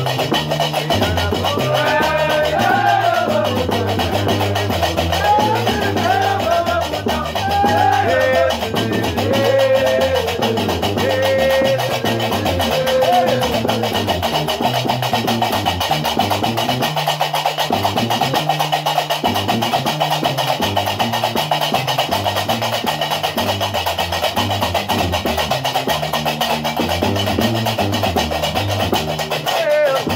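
Gnawa music: a guembri (three-string bass lute) plays a repeating low bass line over the steady clatter of qraqeb iron castanets. A voice sings over them for roughly the first dozen seconds, then the music goes on without singing.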